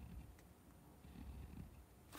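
Near silence: the scratch of a fine (EF) fountain-pen nib drawing lines on paper is barely audible, with only faint low rustle from the hand and paper.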